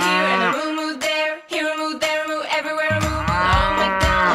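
A cow mooing in long, drawn-out calls, once near the start and again in the last second, over a children's song backing.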